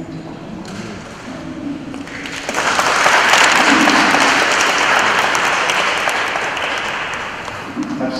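A church congregation applauding loudly in a large reverberant hall, starting about two and a half seconds in and tapering off near the end. A voice speaks into a microphone just before the applause begins.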